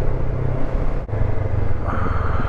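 Honda NX500's parallel-twin engine running steadily as the motorcycle slows from about 40 to 30 mph on a country lane.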